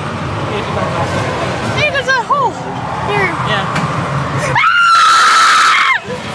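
Fairground ride rumble with distant riders' whoops and calls, then near the end a loud, high, sustained scream held on one pitch for over a second as the Zipper ride swings into motion.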